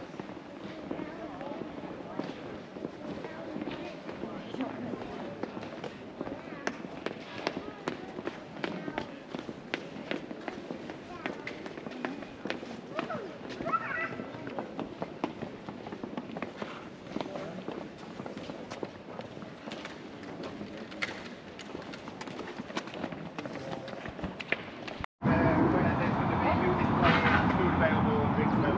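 Indistinct talk and scattered footsteps and knocks echoing in a near-empty football stadium. About 25 s in, the sound cuts off abruptly and gives way to louder, steady outdoor noise.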